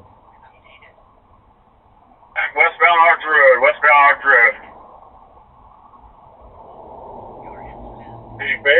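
Police radio traffic: a voice comes over the radio, sounding narrow like a phone, for about two seconds midway, with a steady hiss in the gaps. A faint low hum builds near the end.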